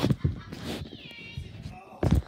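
A single meow-like call, high and falling slightly in pitch, about a second in, after brief children's voices.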